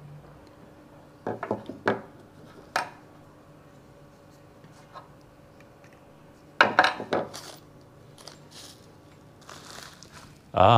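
Small hard plastic camera-mount parts clicking and knocking as they are handled and pushed together: a few sharp clicks about a second in and near three seconds, then a quick cluster of clicks around seven seconds. A plastic bag rustles briefly near the end.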